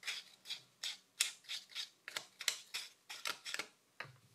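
A piece of paper scraping excess flocking fibres off a reflocked vintage Ken doll's head, in quick repeated short strokes, about three to four a second.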